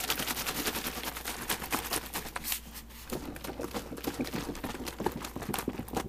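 Plastic milk jugs shaken hard to mix powdered dry milk into the milk: a rapid, continuous run of knocking and rattling from the jugs and the liquid inside.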